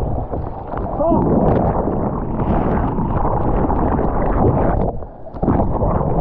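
Breaking whitewater churning and splashing around a waterproof action camera in the surf, a heavy, low rush of turbulent water. The rush dips briefly about five seconds in, then comes back as loud as before.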